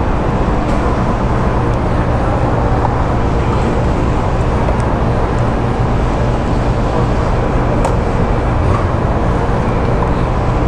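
Honda Beat scooter's carbureted single-cylinder engine running steadily while riding, with a constant low hum under heavy wind rush on the microphone.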